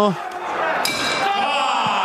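Metal ring bell struck about a second in and ringing on, signalling the end of the round.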